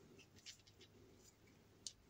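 Near silence, with two faint clicks about half a second in and near the end as a small plastic tab and wires are fitted back into an RC car's electronics box.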